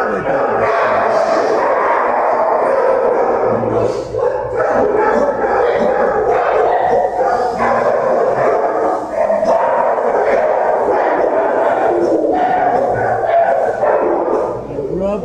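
Many dogs barking at once in shelter kennels: a loud, steady din of overlapping barks.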